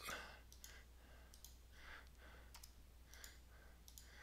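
Faint, scattered clicks from a computer mouse and keyboard over a low steady hum, in near silence.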